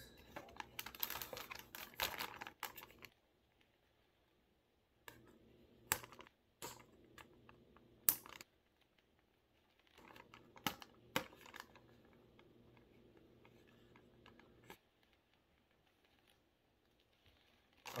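Faint handling of a folding cardboard lantern with clear plastic film windows as it is folded into shape: rustling for the first few seconds, then scattered light clicks and taps of card and plastic with quiet gaps between, the sharpest click about eight seconds in.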